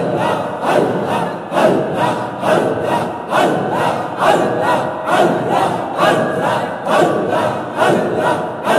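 A crowd of men chanting zikr together in loud, rhythmic unison, each forceful stroke of the chant coming a little more than once a second.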